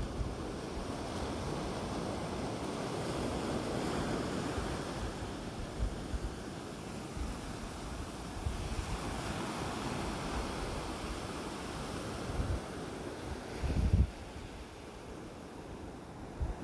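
Ocean surf breaking on a beach: a rushing wash that swells and fades, with wind buffeting the microphone in low thumps, the loudest near the end.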